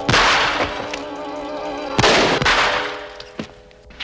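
Two sudden loud bangs about two seconds apart, each with a short crashing tail, over film-soundtrack music with held tones that fade near the end.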